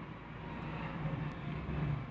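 Faint, steady low rumble of wind buffeting the microphone on an open hillside launch, with no distinct events.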